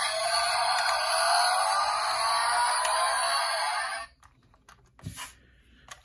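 Tinny sound effect from the built-in speaker of a 1:24 die-cast Range Rover model car, with a pitch that rises slowly like an engine revving; it cuts off suddenly about four seconds in, followed by a few light clicks.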